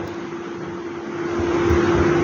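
A steady hiss with a constant low hum under it, slowly growing louder: background noise in a pause of speech.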